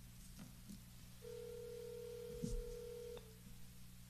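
Telephone ringback tone: one steady tone lasting about two seconds, the sign that the called line is ringing and not yet answered. A soft thump comes shortly before the tone stops, with a few faint clicks before it.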